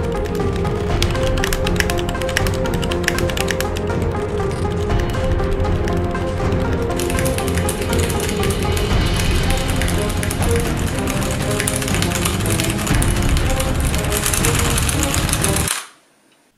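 Background music with a steady bass line and held tones, overlaid for the first several seconds with rapid clicking of fast typing on a computer keyboard. The music cuts off suddenly just before the end.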